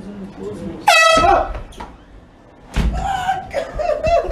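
Handheld air horn blasting loudly in a prank: a short blast about a second in, then a longer blast from near the three-second mark on, with voices shouting over it.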